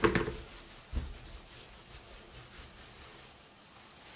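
Faint rubbing of hands rolling a wet wool felt cord back and forth on a terry towel, with one soft thump about a second in.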